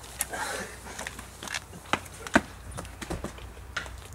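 Footsteps: irregular knocks and scuffs as two people get up and walk to a door, with a brief faint voice near the start.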